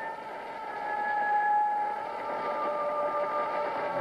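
A steady, hissing electronic drone with a few held high tones, swelling a little about a second in, as the opening of a title-sequence score.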